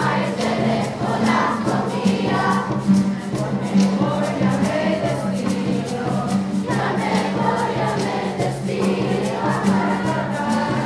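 Large youth choir singing together with acoustic guitar accompaniment, low sustained bass notes and a steady rattling percussion beat.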